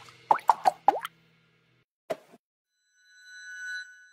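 Logo sting sound effects: a quick run of short pitched pops in the first second, one sliding down in pitch, a lone pop about two seconds in, then a soft bright chime that swells near the end.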